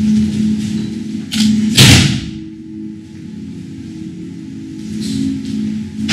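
A loud thump about two seconds in from a body hitting the mat in an aikido throw, with a smaller impact just before it, over steady background music with a low drone.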